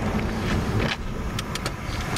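Car engine and road noise heard inside the cabin while cruising on the highway, a steady low rumble with a few light ticks in the second half.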